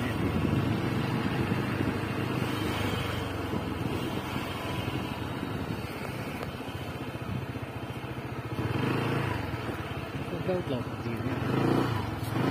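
Small motor scooter engine running steadily while riding along a street, getting louder near the end.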